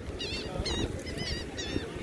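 Gulls calling, a quick series of about five short high calls, over wind buffeting the microphone.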